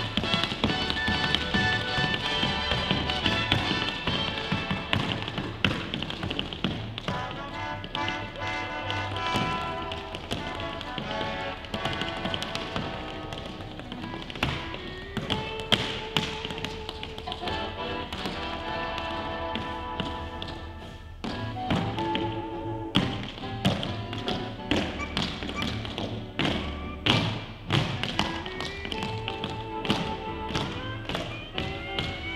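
Tap shoes striking a wooden dance floor in fast rhythmic runs over music, the taps coming thickest and loudest in the last third.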